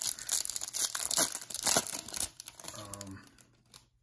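Foil wrapper of a football card pack being torn open and crinkled by hand, a dense crackling for about two seconds that then dies away.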